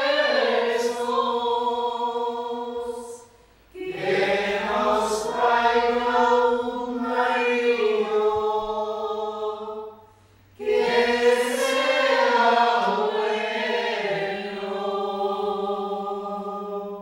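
Slow singing with no instruments, in three long phrases of held notes, with short breaks for breath about three and a half seconds and ten seconds in.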